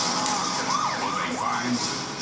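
Television commercial audio: a run of short tones that rise and fall in pitch, several a second, over a steady background.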